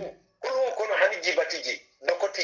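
Only speech: a man's voice talking for about a second and a half after a short pause.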